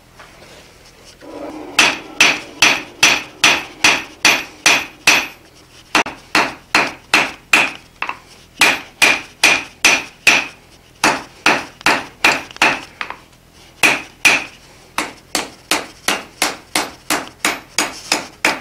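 Hand hammer striking a red-hot quarter-by-three-quarter bar on the anvil, about two to three blows a second, to draw out the taper behind the snub end. Each blow rings. The hammering starts about two seconds in and has a few short pauses.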